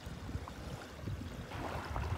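Wind rumbling on the microphone over the steady rush of a swift, high river running past the bank.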